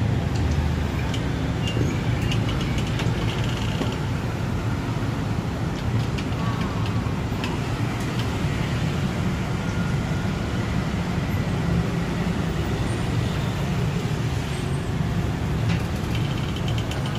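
Steady low rumble of road traffic, with a few faint scattered clicks.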